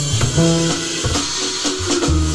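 Instrumental music: a bass line with drums, and a few short held notes above it.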